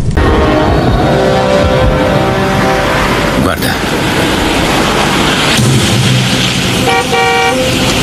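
Street traffic in which a car horn gives two short toots about seven seconds in. Before that, held tones end in a rising whoosh about three and a half seconds in.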